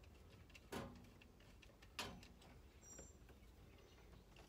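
Two faint metallic clicks, about a second and a quarter apart, from a square-drive screwdriver turning the wire terminal screws of a circuit breaker; otherwise near silence.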